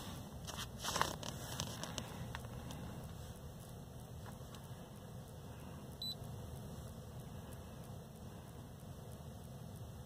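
Faint clicks from handling a handheld OBD2 scan tool and pressing its buttons, over a low steady hum in a truck cab. One short, faint high beep sounds about six seconds in.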